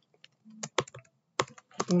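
Key presses on a computer keyboard: a few separate clicks, then a quicker run of keystrokes near the end.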